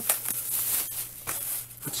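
Thick clear plastic bag rustling and crinkling as a hand grabs it and pulls it open; the crackle comes in uneven bursts, mostly high-pitched.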